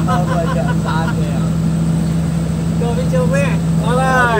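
Truck engine running steadily under way, a low, even drone heard from inside the cab, with voices and laughter over it.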